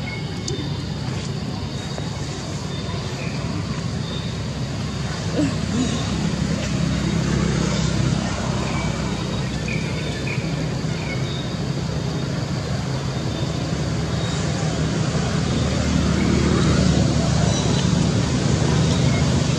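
Steady low outdoor rumble, like a running motor or distant road traffic, growing a little louder near the end, with a few faint short high chirps.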